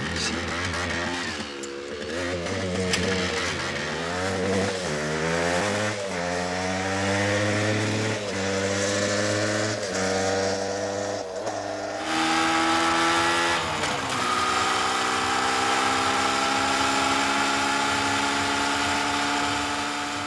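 Small trail motorcycle engine accelerating through the gears, its pitch climbing and dropping back at each of several shifts, then settling into a steady run whose pitch rises slowly in the second half.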